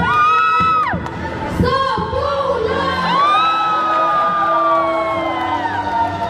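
A voice on a PA microphone giving two drawn-out, high-pitched cheering shouts: a short one at the start and a long one from about three seconds in that slowly falls away, over background music.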